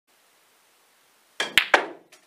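Three sharp clicks in quick succession near the end, from a snooker cue striking the cue ball and the balls knocking together.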